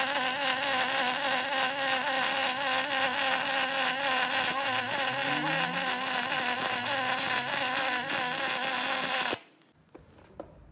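Aluminium MIG welding arc running continuously as a weld bead is laid on a trailer's aluminium I-beam: a steady buzzing hiss. It cuts off suddenly near the end as the arc is stopped.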